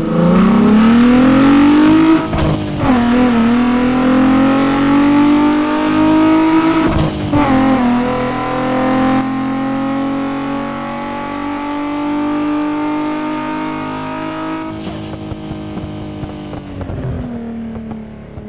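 A car's engine accelerating through the gears: its pitch climbs, drops at a gear change about two seconds in, climbs again and drops at another change about seven seconds in. It then holds a nearly steady note and fades near the end.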